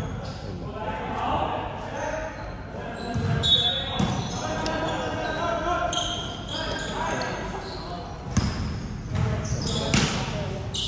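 Basketball game sounds in a large echoing gym: a ball thudding on the court floor several times, with indistinct players' voices and a short high squeak.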